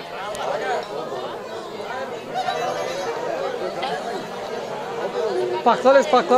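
Chatter of many people talking at once, no single voice standing out, until a nearer man's voice comes in near the end.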